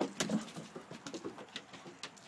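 A puppy's paws and claws pattering and tapping irregularly on wooden deck boards as it runs, with a short low sound about a quarter second in.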